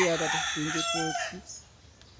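A bird calling, heard under a man's voice during the first second or so.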